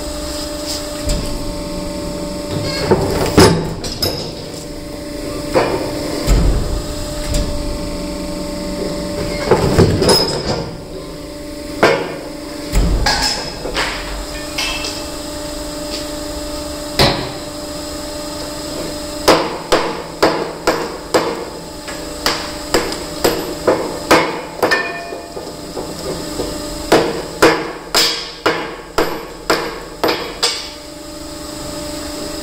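Granite being split in a Steinex hydraulic stone splitter, with a steady machine hum underneath and scattered sharp knocks of stone. In the last third comes a quick run of hammer strikes on a split granite block, about two a second, with a short pause in the middle.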